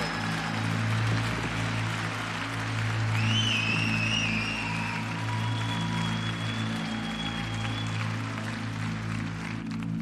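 Large audience applauding over walk-on music with a steady low bass tone, with a high cheer about three seconds in.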